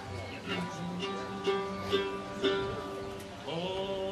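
Acoustic string instruments of a bluegrass band plucked loosely between songs rather than in a tune: a few sustained notes, one note plucked three times about half a second apart, then a note sliding up in pitch near the end.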